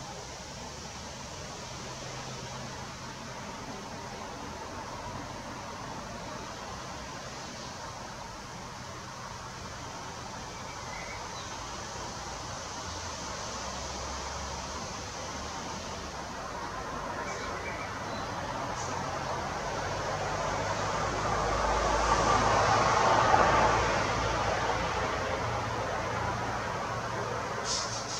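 Steady outdoor background hiss, with a distant vehicle passing that swells slowly to its loudest near the end and then fades.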